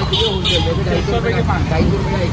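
Street traffic from motorbikes and an auto-rickshaw making a steady low noise, with people's voices talking over it.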